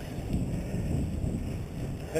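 Wind buffeting the microphone of a camera on a moving mountain bike: a steady low rumble.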